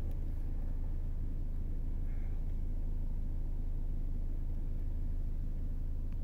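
Steady low rumble of vehicles in street traffic.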